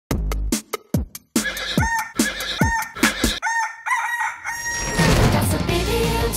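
A rooster crowing in a run of pitched calls ending in a held note, after a series of short clicks and falling sweeps. Band music comes in about five seconds in.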